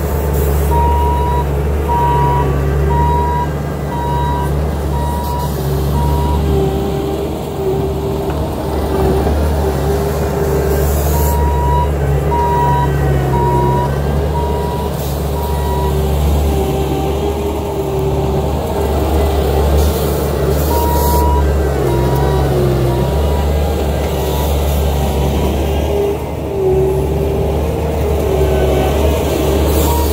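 Bobcat T650 compact track loader's diesel engine running steadily as the machine works the mud. Its reversing alarm beeps in three spells of several seconds each as it backs up.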